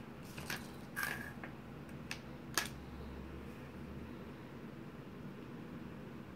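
Hands handling and turning a cake of yarn close to the microphone: a few soft rustles and clicks in the first three seconds, then only a faint low hum of the room.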